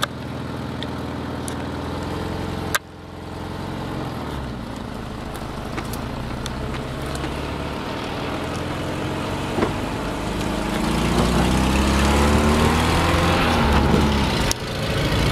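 A car engine running as the vehicle moves off, with one sharp click about three seconds in. From about ten seconds in the engine pitch rises and it gets louder as the car accelerates.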